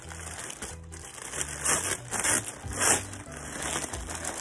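Clear plastic clothing bag crinkling and rustling as it is pulled open, in several short bursts, over background music with a steady bass line.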